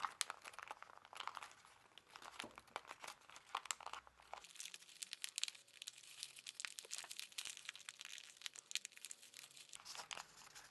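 Thin kami origami paper crinkling and crackling as it is pressed and shaped by hand, in a quick, irregular run of small crackles.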